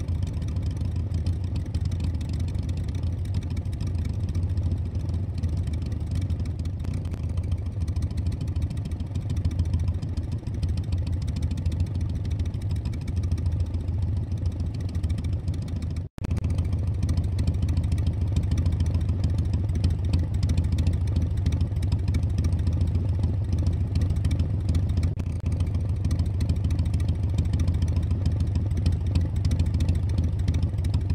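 Motorcycle engine running steadily with a deep, even low hum. It cuts out briefly about 16 seconds in and resumes slightly louder.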